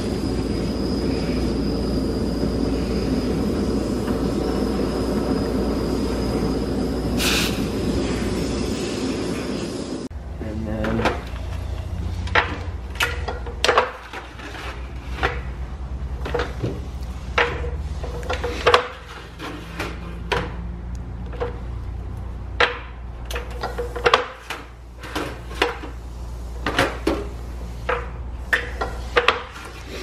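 A steady machine drone with a faint high whine runs for the first third and stops abruptly. After it come irregular metallic clanks and knocks as copper panels are clamped and folded on a manual sheet-metal brake, some of them briefly ringing.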